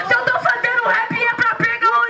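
A woman rapping a fast improvised verse in Portuguese into a microphone through a PA, over a hip-hop beat.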